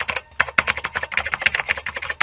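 Computer-keyboard typing sound effect: a rapid, even run of key clicks, roughly ten a second, starting suddenly out of silence.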